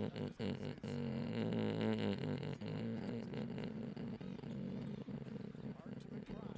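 A man laughing, long and drawn out, in a low continuous voice.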